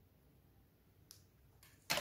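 Quiet handling of a smartwatch and its magnetic charging cable, with a faint tick about a second in and a short, sharp click just before the end.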